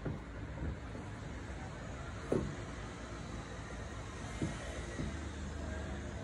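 White leather sneakers knocking and scuffing softly against a footrest and wooden floor as sock feet slip in and out of them: a handful of short taps, the sharpest about two seconds in. A steady low rumble runs underneath.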